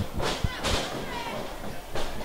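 Wrestlers moving on the ring canvas, with a single thud about half a second in, and faint voices in a large hall.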